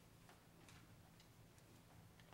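Near silence: room tone with a steady low hum and a few faint scattered clicks.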